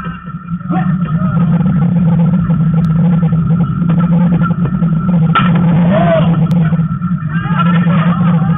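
Open-air ballfield ambience: a steady low hum with players' distant shouts and calls. A single sharp knock comes about five and a half seconds in.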